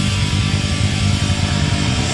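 A live rock band playing loudly, with electric guitar and bass in a dense, steady wall of sound.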